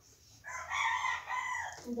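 A rooster crowing once, a single call of a little over a second that falls away at the end.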